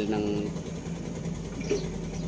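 An engine idling steadily under a brief spoken word.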